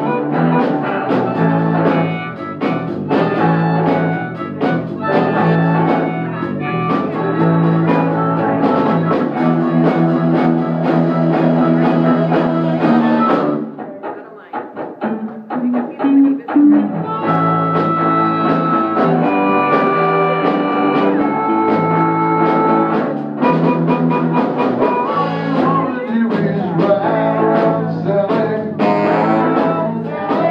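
Live band playing: electric guitar, bass guitar and drum kit together. The music drops away briefly about halfway through, then the full band comes back in.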